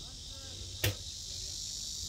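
Steady high-pitched insect chorus buzzing without a break, with one sharp knock a little under a second in.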